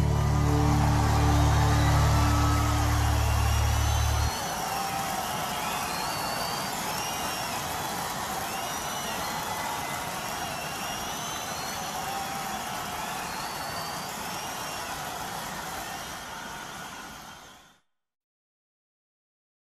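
End of a live concert recording: the band's final held chord cuts off about four seconds in, leaving audience applause with whistles and cheers, which fades out near the end.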